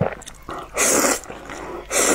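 A person slurping thick wheat noodles: two loud, hissing slurps, the first just under a second in and the second starting near the end.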